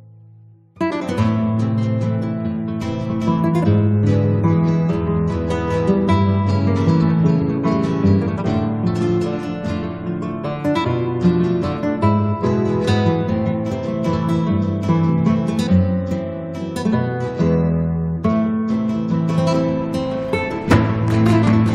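Background music on acoustic guitar, plucked and strummed, starting abruptly just under a second in.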